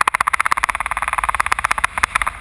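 Paragliding variometer beeping rapidly, about a dozen short high beeps a second, the fast beep rate of a vario signalling a strong climb in lift.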